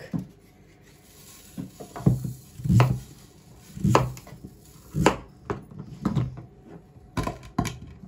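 Knife chopping through raw pumpkin and knocking on a plastic cutting board: about eight sharp chops at irregular intervals of about a second, starting about two seconds in.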